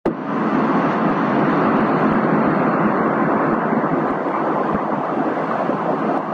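Steady, even rushing noise of jet aircraft, with no voices in it.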